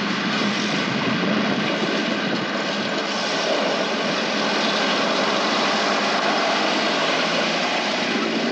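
Soft-top jeep's engine running hard as it speeds over dirt, a loud steady noise of engine and tyres.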